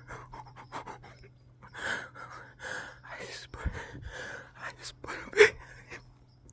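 A man's heavy, rapid panting and gasping close to a phone's microphone: a rush of adrenaline right after shooting a buck with a bow. One gasp about five seconds in is louder than the rest.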